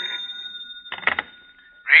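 Telephone bell ringing, used as a radio-drama sound effect; the ring fades out just after the start, followed about a second in by a brief clatter.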